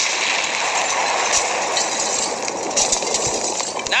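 A steady, loud rushing noise, a sound effect laid into the radio show's intro between the host's lines, ending as his voice returns near the end.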